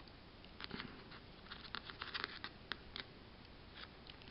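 Faint, irregular small clicks and scratches of a metal crochet hook working yarn loops over the metal pins of a homemade knitting spool, as each loop is lifted over the next.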